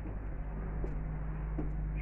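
A steady low mechanical hum, as of a motor or engine running nearby, with a few faint clicks.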